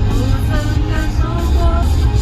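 Karaoke backing track of a pop-rock song playing through the cab's sound system, with a girl singing along into a handheld microphone.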